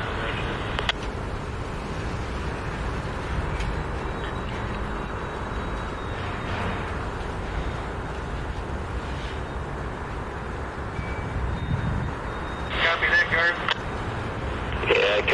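Freight cars rolling slowly past: a steady low rumble of wheels on the rails. A short burst of voice comes in near the end.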